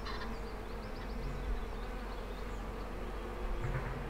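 Bees buzzing steadily around flowers, with a few faint high chirps in the background.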